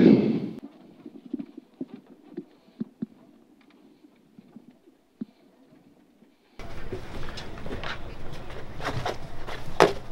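Inside the cabin of a Volvo 240 rally car with its engine stalled: quiet apart from faint scattered knocks and rattles. Then, about six and a half seconds in, a sudden louder steady rumble of cabin and road noise with rattles begins.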